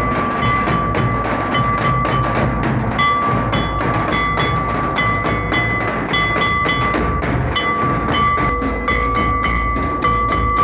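Folk drumming: large double-headed drums and a bowl-shaped kettle drum beaten with sticks in a fast, dense rhythm. A high steady tone stops and starts over the drums.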